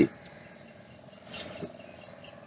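A pause in a man's talk: quiet background with a faint steady tone, and a short soft breath about one and a half seconds in.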